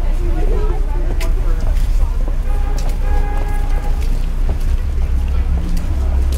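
City street ambience: a steady low rumble of traffic, with snatches of passers-by's voices in the first second. A pitched tone with several overtones is held for about a second and a half near the middle.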